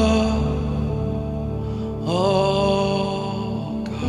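Slow live worship music: sustained chords over a steady bass, with a melody line that slides up into a long held note about halfway through.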